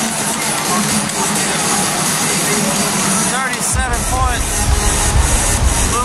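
Basketball arena crowd chatter with music playing loudly; a heavy bass beat comes in a little past halfway through.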